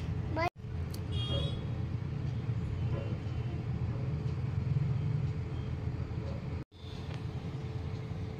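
Steady low background rumble, broken twice by brief dropouts to silence: once about half a second in and once near the end.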